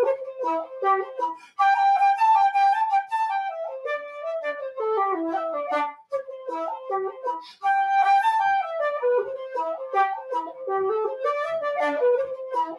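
Irish wooden flute playing a reel: a quick run of notes, breaking briefly for breath about a second in and again at about six seconds. The phrase that opens on a held note at about two seconds comes round again at about eight seconds.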